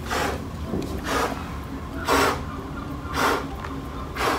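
A man blowing hard through a fabric face mask with an exhalation vent, four short puffs of breath about a second apart, aimed at a lit match.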